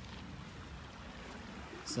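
Faint, steady rush of flowing creek water.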